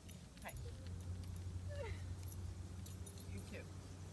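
A puppy gives three short, high, falling whines while small metal collar tags jingle, over a steady low hum.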